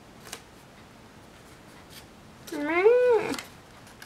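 A domestic cat meows once about two and a half seconds in: a single call, under a second long, that rises and then falls in pitch. Faint ticks of sticker paper being handled come before it.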